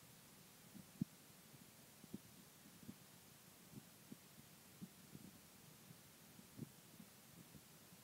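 Near silence: quiet room tone with faint, irregular low thumps, the loudest about a second in.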